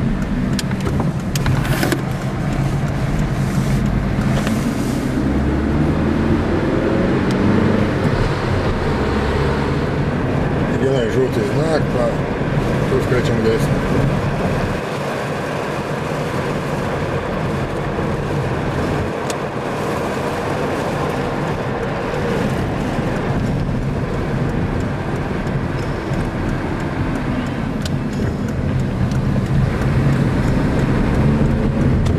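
A car driving, heard from inside the cabin: engine and tyre-on-road noise throughout. The engine note rises during the first several seconds as the car speeds up, then runs steadier and a little quieter from about halfway.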